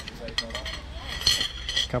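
A metal spoon and fork clinking and scraping on a plate of fried rice. A few light clicks come first, then a longer ringing scrape about a second in.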